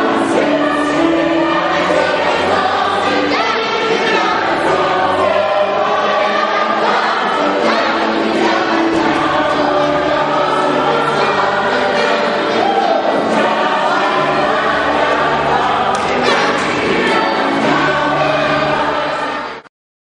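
A choir of many voices singing a song together, cut off abruptly near the end.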